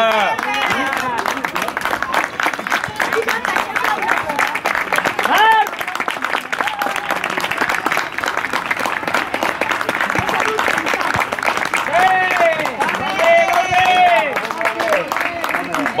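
Applause: a group clapping steadily, with children's voices shouting and calling over it, loudest about five seconds in and again from about twelve to fifteen seconds in.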